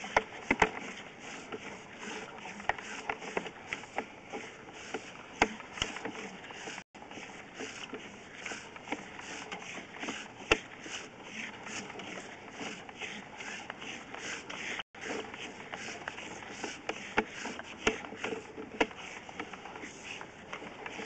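Sewer inspection camera's push cable being fed by hand down the line, a continuous scraping and rubbing with irregular sharp clicks as the rod slides through the cleanout.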